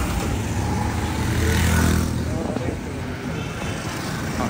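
Street traffic of motorcycles and auto-rickshaws with engines running close by. An engine hum is strongest in the first two seconds and eases off, over a steady haze of street noise and indistinct voices.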